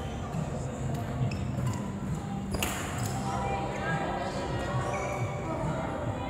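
Badminton racket striking a shuttlecock: one sharp crack about two and a half seconds in, with fainter hits and shoe sounds around it, echoing in a large sports hall over background voices and music.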